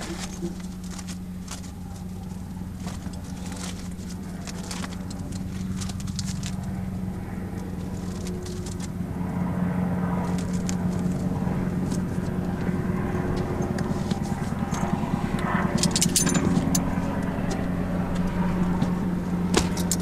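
A steady engine hum that grows louder through the second half, with paper rustling and small clicks as checklist pages are handled.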